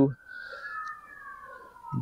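A faint siren wailing, its pitch rising slightly and then falling slowly.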